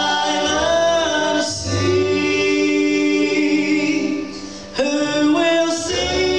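Live gospel song: several voices singing in harmony, holding long notes over a plucked upright bass. There is a short breath between phrases about four and a half seconds in.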